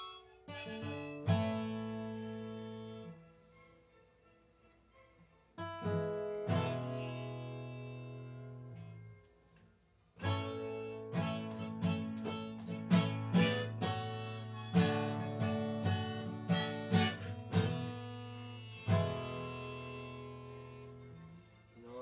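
Acoustic guitar strummed in chords that ring out and fade, with short pauses, then a quicker run of strums through the middle, together with a harmonica played from a neck rack.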